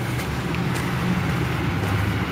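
Steady road traffic noise, an even low rumble with no distinct passing vehicle.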